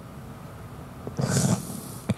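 A man's breath drawn noisily close to a handheld microphone, a rough, hissing half-second intake about a second in, over a low steady room background.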